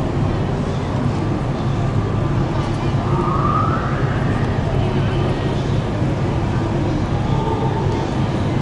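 Steady low drone of the Diamond Princess cruise ship's engines running at the quay, with a faint rising tone about three seconds in.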